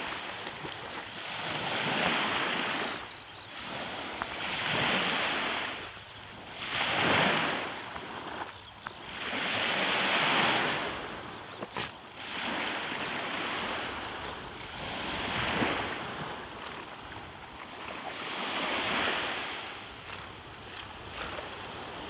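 Small sea waves breaking and washing in at the shoreline, each surge swelling and fading about every two to three seconds.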